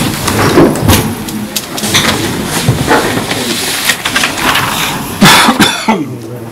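Scattered knocks, bumps and rustling of people moving seats and handling things at a meeting table, with a louder scraping rustle lasting about half a second near the end.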